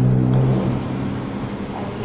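A motor vehicle's engine running, a steady low hum that cuts off about half a second in.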